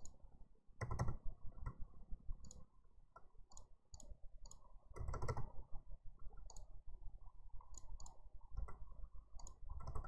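Keys being pressed: irregular clicking, a few clicks a second, with a low rumble underneath.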